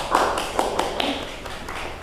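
A small group applauding: a scatter of irregular hand claps that thins out near the end.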